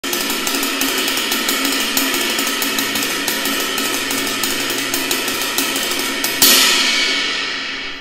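Ride cymbal played fast with the tip of a wooden drumstick, a quick even stream of strokes over the cymbal's ringing wash. A little over six seconds in comes one louder stroke that rings on and fades away.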